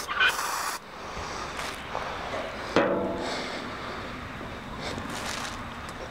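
Aerosol deodorant can spraying, a brief hiss of about half a second near the start, then a short vocal sound falling in pitch about three seconds in.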